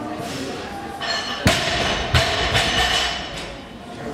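A sharp thud about a second and a half in, then two softer low thuds, over steady background noise in a large hall.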